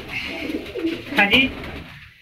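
Domestic pigeons cooing in a loft.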